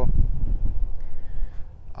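Wind buffeting the phone's microphone: a low, rumbling noise that dies down near the end.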